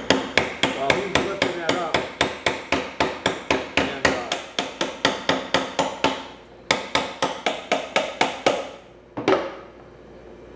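Steel hammer tapping rapidly on a Kawasaki Mule transmission shaft, about three ringing metallic taps a second, keeping the shaft held down while the gearbox case halves are pried apart. The taps break off about six seconds in, resume for two more seconds, and end with one last strike about nine seconds in.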